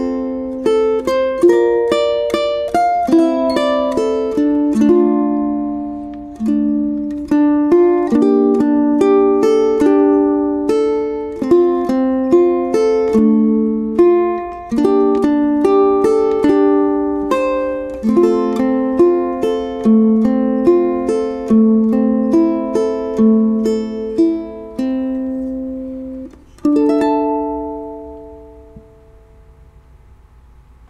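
Solo ukulele, fingerpicked, playing a melody over chords. The notes stop briefly about 26 seconds in, then one final chord is struck, rings and fades out.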